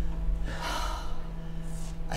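A person's heavy breath, drawn out for about a second, starting about half a second in.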